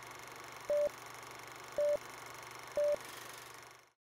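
Film-leader countdown sound effect: three short beeps at one steady pitch, about a second apart, over a faint steady film hiss and hum. The sound cuts off just before the end.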